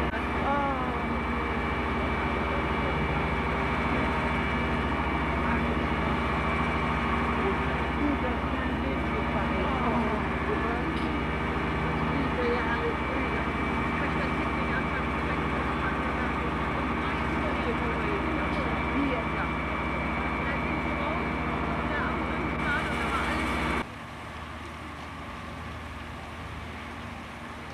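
Steady machine drone of fire-engine motors and pumps running at a building fire, with distant voices calling out now and then. The drone drops away abruptly near the end.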